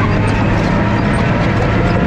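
Diesel engine of a tracked construction machine running steadily under load, with the clatter and squeak of its steel tracks rolling over loose dirt.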